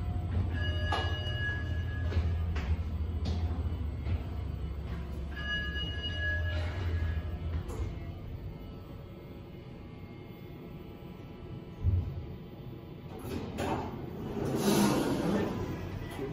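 Schindler 3300 gearless traction elevator car in travel: a steady low hum for about the first seven and a half seconds, with two short electronic tones about five seconds apart. It then goes quieter, with a single thump about twelve seconds in and a louder rushing noise near the end.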